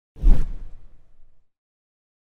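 A single whoosh sound effect with a low thud at its start, fading out over about a second, as used for an animated video transition.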